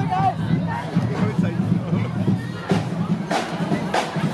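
Carnival street parade crowd: people talking and calling out over music playing, with two short sharp rattles or clicks near the end.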